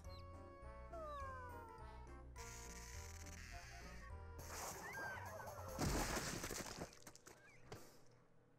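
Faint cartoon soundtrack: background music with high, squeaky character voices and a falling squeak about a second in, then a noisy crash-and-splatter effect, loudest about six seconds in, as the character comes apart.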